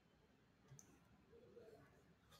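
Near silence: faint room tone with two soft computer-mouse clicks about a second apart.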